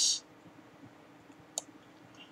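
A brief high hiss at the very start, then faint room tone broken by one sharp click about one and a half seconds in.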